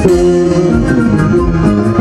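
Live band music at a concert: an instrumental passage with held notes over a steady beat, with no singing.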